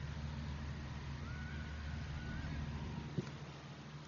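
Outdoor sports-field ambience with a steady low rumble and a faint wavering tone in the middle. A single sharp knock comes about three seconds in.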